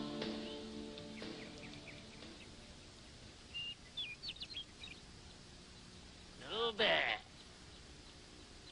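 Background music fades out over the first second or two. A few short, high bird chirps follow around four seconds in. Near the end comes a loud, wavering, bleat-like cry lasting under a second.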